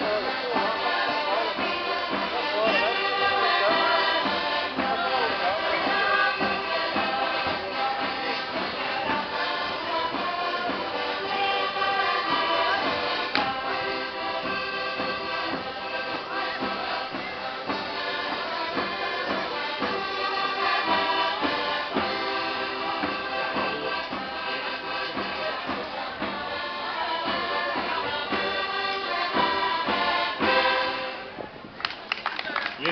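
Live Portuguese folk-dance music led by accordion, with voices singing along, playing on without a break.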